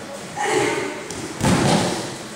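A short voice sound about half a second in, then a loud thud on the judo mats about a second and a half in, from judoka grappling.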